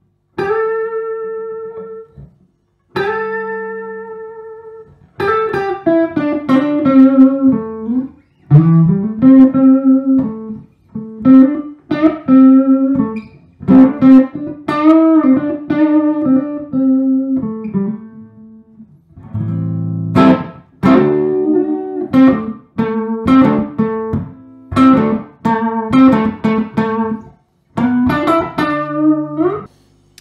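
Gibson Les Paul '50s Goldtop electric guitar played clean on its neck (rhythm) P90 pickup, with volume and tone on full. Two chords ring out and fade, then a run of quickly picked notes and chord fragments follows, with a brief pause a little past the middle.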